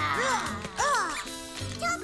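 Children's voices making playful pretend-dinosaur noises: two or three short calls that rise and fall in pitch, over light background music.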